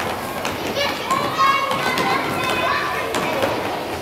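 Young children shouting and calling out while playing a ball game in an echoing gymnasium, with scattered thuds of the ball and feet on the wooden floor.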